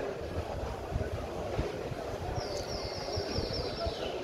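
Uneven low outdoor rumble throughout, with a rapid high chirping trill starting a little past halfway and running for over a second.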